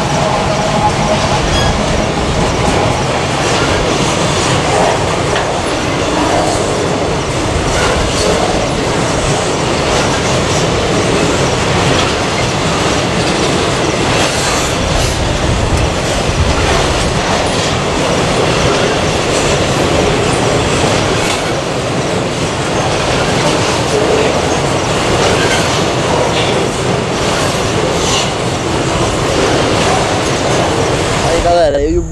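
Freight train wagons, hopper cars among them, rolling past close by: a steady wheel-on-rail rumble with scattered clicks as the wheels cross the rail joints.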